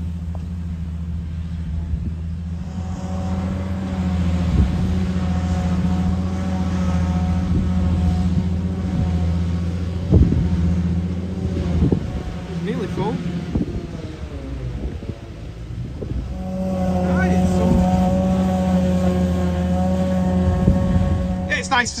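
A vehicle engine running steadily: a low hum with a higher whine over it. The whine falls away about fourteen seconds in and comes back about two seconds later.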